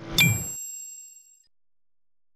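Logo-reveal sound effect: a short rising swell ending in a bright metallic ding about a fifth of a second in, its high ringing tones fading away over about a second.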